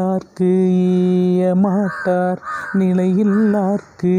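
A man chanting a verse of Tamil poetry as a slow, sung recitation, holding long steady notes with wavering turns between them. The voice breaks off briefly just after the start and again about two and a half seconds in.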